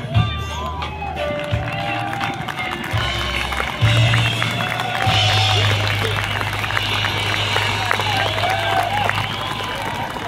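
A live band holds sustained low bass notes on stage. The notes step between a few pitches, then settle on one long held note about halfway through, heard through a phone recording from within the crowd. Audience voices chatter and call out over it.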